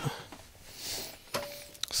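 Handling noise and faint clicks as an XLR cable plug is pulled out of the mic input on an audio mixing board: a soft rustle of the cable, then a sharp click and a couple of smaller clicks as the connector comes free.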